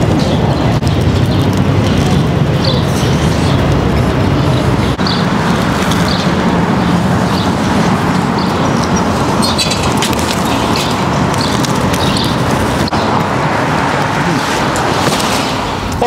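Steady city street traffic noise, with cars passing close by.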